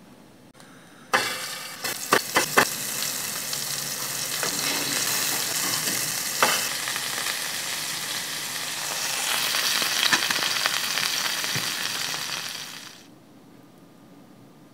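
Meatballs sizzling in a hot frying pan. The sizzle starts suddenly about a second in with a few sharp pops, runs on steadily, and stops near the end.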